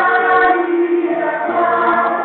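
A group of voices singing together, holding long notes that change every half second or so.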